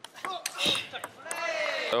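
Table tennis ball being struck and bouncing on the table during a rally: a few short, sharp clicks in the first second and a half, with a long drawn-out voice over the end.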